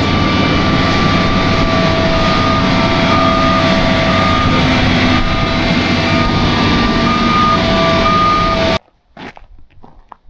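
Gradall XL4100 wheeled excavator running loud and steady as it drives along, with a steady whine over the engine. The sound cuts off suddenly near the end.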